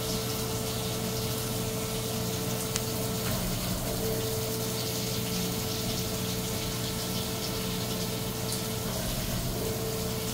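Haas VF-6 vertical machining center milling under flood coolant: the steady hiss and splash of coolant spray over the hum of the running machine. A steady mid-pitched tone from the machine drops out briefly twice, about three seconds in and again near the end.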